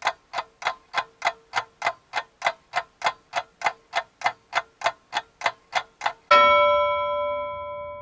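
Clock-ticking sound effect, about three even ticks a second, then a single bell ding about six seconds in that rings out and fades. The ding is a timer chime marking the end of the wait for the download.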